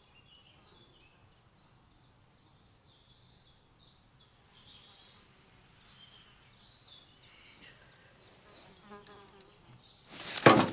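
Faint woodland birdsong: short, high chirps repeating a couple of times a second over a very quiet background.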